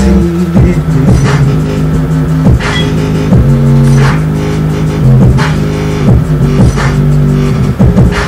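Electronic music with deep sustained bass notes that change pitch every second or so, over a steady beat.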